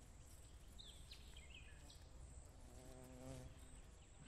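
Near silence outdoors, with a flying insect buzzing briefly past from a little past halfway until near the end. A few faint high chirps sound about a second in.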